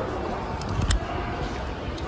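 Umbrella being taken down: the nylon canopy rustles and brushes against the phone's microphone, with a couple of short clicks from the umbrella about half a second in and just before the one-second mark.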